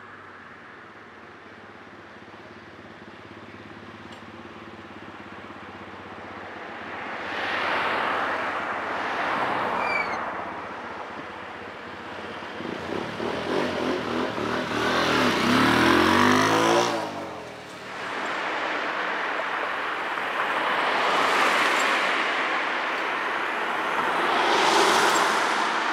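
Motorbike engine revving, its pitch climbing steeply for a few seconds before it cuts off suddenly, between swells of traffic passing on the street.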